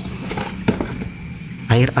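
Faint scattered clicks and crackle from a plastic electrolyte pack as the battery acid drains out of it into the cells of a dry-charged motorcycle battery, over a low steady hum. A man's voice comes in near the end.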